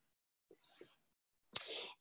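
Near silence in a pause of speech, then a short in-breath by the speaker about one and a half seconds in.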